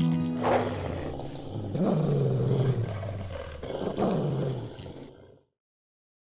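Dramatic animal-roar sound effect, three roars in turn over a music bed, fading out to silence a little after five seconds in.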